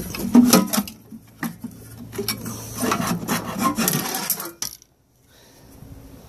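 Irregular clinks, knocks and rubbing of metal parts being handled inside an opened solar inverter case, with a faint low hum in the middle; the sound drops out briefly near the end.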